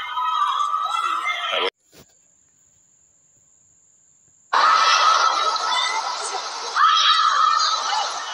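Women's football broadcast field sound with voices, which cuts out abruptly under two seconds in. Near silence follows with a faint steady high tone and a single click. From about four and a half seconds the field sound returns loud, thick with high-pitched shouts.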